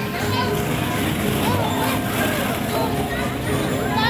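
Babble of many children's voices, talking and calling over one another, as in a busy children's play area.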